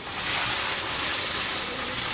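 Raw cut potato strips dropped into a large pan of hot oil for French fries, frying with a loud, steady sizzle that starts suddenly and eases slightly toward the end.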